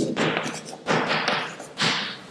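Chalk writing a word on a blackboard: about three scratchy strokes, each starting with a sharp tap of the chalk against the board and trailing off.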